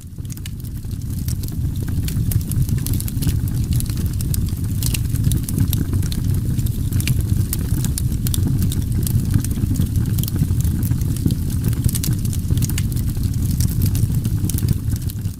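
Steady low rumble with many scattered crackles and pops throughout. It fades in over the first two seconds.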